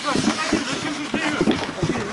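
Ice hockey players calling out to each other across an outdoor rink, over the steady scrape of skates and several sharp clacks of sticks and puck on the ice.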